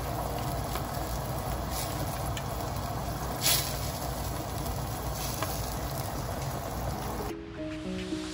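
Curry gravy simmering in a pot, a steady bubbling hiss, with a few soft plops as raw chicken pieces are dropped into it. The simmering cuts off near the end and background music starts.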